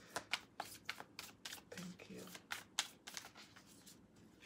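A deck of tarot/oracle cards being shuffled by hand: a quick, irregular run of soft card snaps and clicks, with a brief hum from the reader about halfway through.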